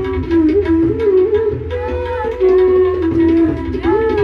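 Bamboo flute (bansuri) playing a slow melody in raga Brindavani Sarang, with long held notes joined by gliding bends and a rising slide near the end.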